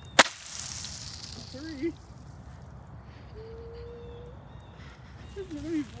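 A single sharp crack just after the start, trailed by about a second of high hiss, with brief voiced sounds later.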